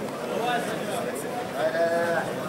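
Spectators talking and shouting over each other, with one long drawn-out shout near the end.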